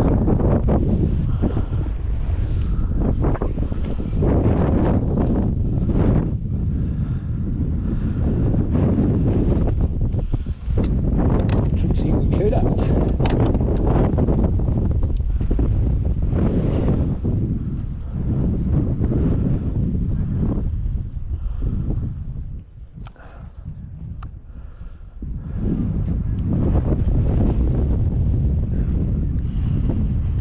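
Wind buffeting the microphone, a heavy low rumble that eases off for a few seconds about two-thirds of the way through.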